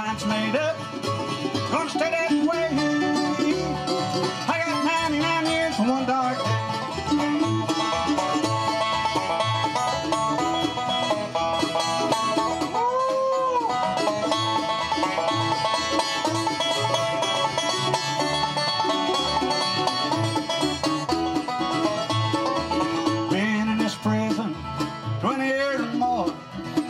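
Live bluegrass band playing an instrumental break: banjo, mandolin and acoustic guitars over upright bass, with a steady beat.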